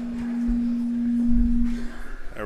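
A held low musical note of two close pitches, sounding steadily and cutting off near the end, with a couple of low thuds beneath it.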